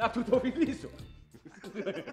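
A man laughing in short rapid bursts, followed by background music with a steady beat starting about halfway through.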